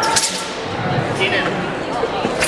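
Southern broadsword (nandao) swishing through the air in a wushu routine, with one sharp swish just after the start and fainter movement noises after it.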